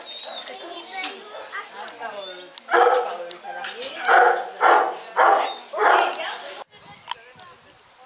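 A shelter dog in its kennel barking loudly: one bark about three seconds in, then four more in quick succession about half a second apart, over people chatting.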